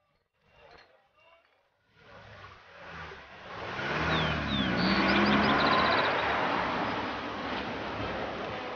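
A car approaching, its engine and tyre noise growing louder over a few seconds and then running on steadily, with a few brief bird chirps in the middle.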